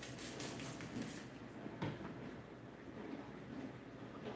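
Hand trigger-spray bottle of Star San sanitizer spritzed several times in quick succession onto airlock parts, each spritz a short hiss. A single knock follows a little under two seconds in.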